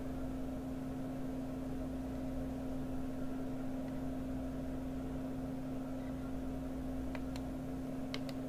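Residential exhaust fan running steadily on a test table: a constant low motor hum over the rush of air blowing out through its grille.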